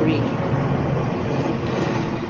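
Steady road and engine noise heard inside a moving car's cabin.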